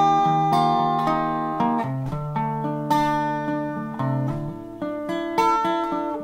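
Solo acoustic guitar strumming ringing chords, with a new strum or chord change every second or so.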